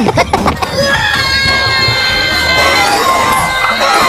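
High-pitched cartoon Minion voices, a few quick pops and then a chorus of squeaky voices holding a long cheering cry.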